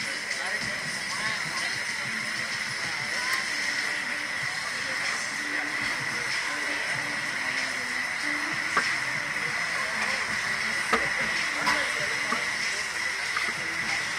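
A steady hiss with faint voices in the background, and a few sharp clicks in the second half.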